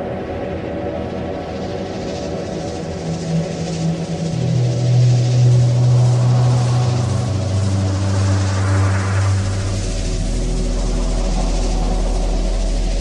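Beatless intro of a techno track: sustained synth drones, with a bass line stepping down through three low notes about halfway through. A rising noise sweep swells and a deep steady sub-bass drone comes in near the end.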